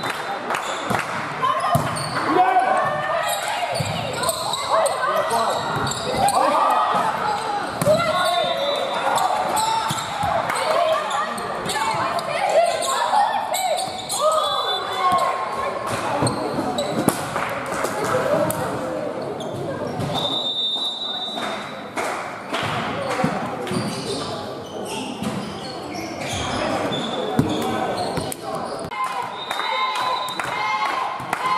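Overlapping voices of players and spectators talking and calling out in a large, echoing sports hall, with volleyballs bouncing on the floor. A whistle sounds briefly a few times.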